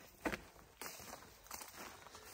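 Faint footsteps through grass and weeds, a few steps with the clearest about a third of a second in.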